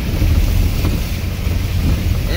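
A vehicle driving through running floodwater and mud on a dirt track, heard from inside the cab: a steady low rumble of engine and tyres with water rushing and splashing under the wheels.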